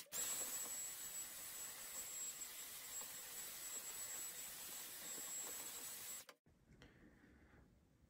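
Cordless stick vacuum running with a steady hiss and a thin high whine as it sucks plastic drilling shavings off a storage-tub lid. It switches off suddenly about six seconds in.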